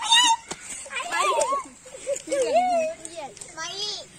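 Children's high voices calling out and laughing in play, several at once, with pitch sliding up and down.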